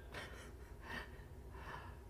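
Faint breaths from a man pausing between sentences: a few soft airy puffs over a low, steady room hum.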